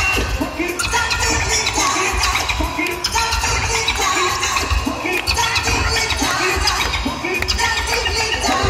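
A live band playing a funky hip-hop groove: drums keeping a steady beat under bass guitar and keyboards.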